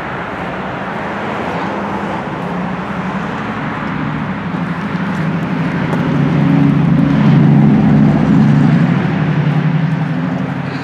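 A motor vehicle's engine running close by, a steady low hum over road noise, growing louder about six seconds in and easing slightly near the end.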